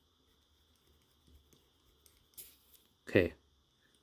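Short hiss of air escaping at a bicycle shock pump's screw-on head as it is turned off the fork's air valve, about two and a half seconds in: the pump losing its 80 psi.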